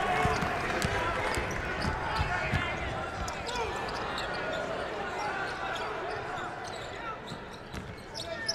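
A basketball dribbled on a hardwood arena court, a run of short low bounces that is busiest in the first few seconds, under the general chatter of an arena crowd.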